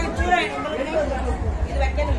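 Chatter of several people talking at once in a busy crowd.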